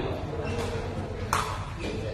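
A single sharp, ringing crack of a sepak takraw ball being struck, about a second and a third in, over a low murmur of voices under a large echoing shed.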